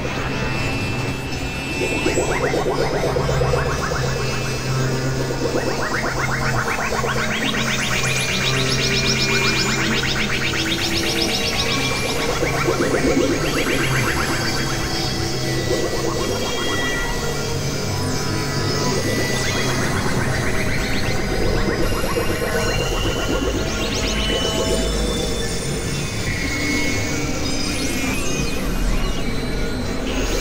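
Experimental electronic music from Novation Supernova II and Korg microKORG XL synthesizers: dense, clashing layers of tones and noisy textures over a steady low drone, with deeper bass coming in near the end.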